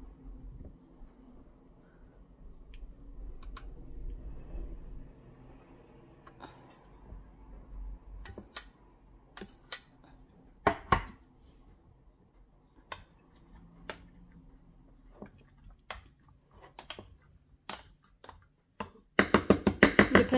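Metal spoon scooping crushed tomatoes from a tin can and knocking against the can and the blender cup: a string of irregular clinks and taps, the loudest about halfway through.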